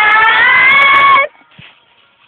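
A person's voice in a long, loud, high-pitched held cry, its pitch rising slightly, cut off suddenly a little over a second in.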